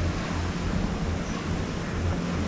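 Conveyor-belt lift running steadily inside a corrugated metal tunnel: a constant low hum under an even rushing noise.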